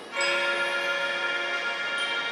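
A band of melodicas plays a sustained chord of held notes, coming in fresh just after the start.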